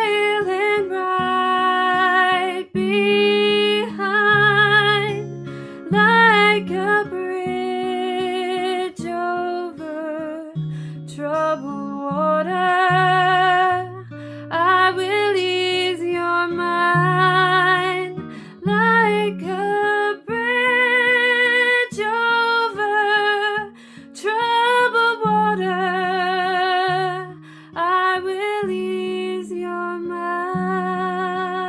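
A woman singing with vibrato in long held phrases, accompanying herself on a strummed acoustic guitar.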